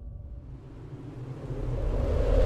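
Music-track intro: a low bass rumble dies away, then a swell of noise rises and grows steadily louder, building toward the track's loud start.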